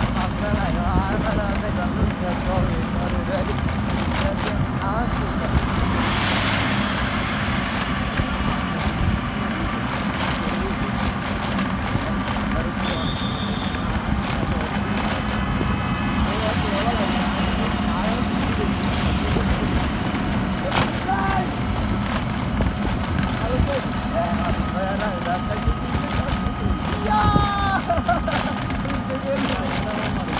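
Street traffic ambience: a steady low rumble of engines, with a vehicle passing about six seconds in. Faint voices come and go, and a few short pitched tones, like distant horns, sound in the second half.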